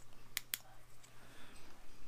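Two quick clicks close together about half a second in: a small UV flashlight's switch being pressed on, to cure UV resin on a rod guide wrap. A faint steady low hum runs underneath.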